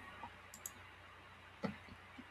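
Faint double click about half a second in, a computer mouse click advancing a presentation to the next slide, against quiet room tone.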